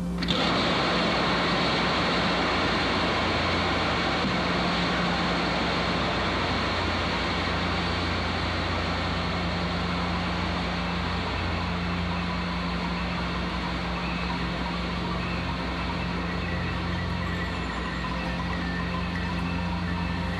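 Sustained applause from a large audience in an old, narrow-band recording, starting suddenly and holding steady, over a constant low electrical hum.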